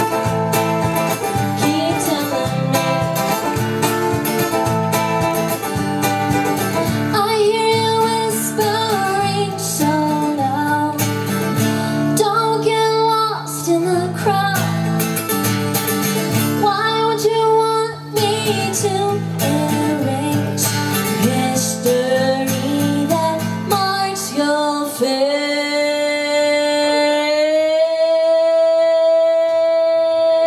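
A woman sings live with strummed acoustic guitar and ukulele accompaniment. About three seconds before the end the strumming stops and she glides up into one long held note.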